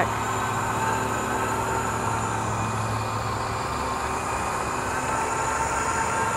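Battery-electric T1H2 helicopter tug driving on its tracks, a steady mechanical hum with a thin high whine; the low part of the hum eases off about halfway through.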